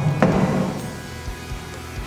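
Plastic lid of a homebrew fermenting bucket being pulled off, with a couple of hollow plastic knocks near the start, then small handling taps as it is carried away.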